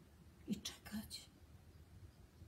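A woman's voice saying a short phrase softly, close to a whisper, about half a second in; otherwise faint room tone.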